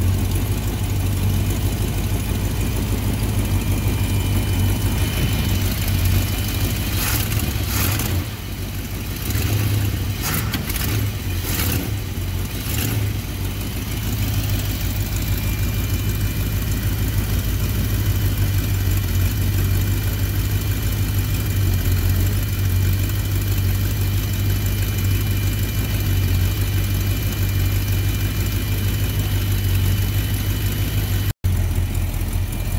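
Mopar V-engine with electronic ignition idling steadily, now running after a bad ground at the ignition control unit was fixed. A few short clicks or knocks come between about a quarter and halfway through.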